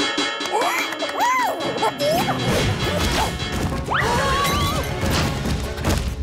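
Cartoon sound effects: a clatter of crashes and bangs as doors and shutters are slammed shut, with short sliding cartoon yelps over music. A low rumble comes in about two seconds in.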